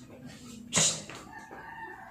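A dog howling: one long, wavering pitched call that begins just past halfway through, after a short, sharp noise a little under a second in.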